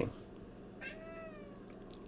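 A cat meowing once, faint and short, about a second in.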